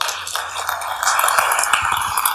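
Audience applause, a dense patter of many hands clapping that breaks out suddenly and holds steady.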